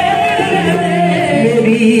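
Qawwali performed live: several men's voices sing together over a steady harmonium drone, with hand clapping keeping time.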